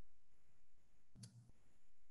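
A single faint computer-mouse click about a second in, over quiet room tone.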